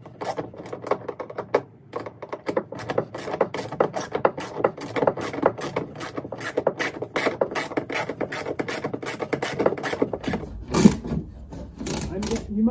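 Ratchet wrench with a socket clicking in quick, fairly even strokes, about four a second, as a nut is run down on a light's mounting bolt. There is a louder clunk near the end.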